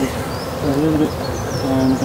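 Honeybees buzzing around an open hive box: the hums of individual bees come and go, rising and falling in pitch as they fly by.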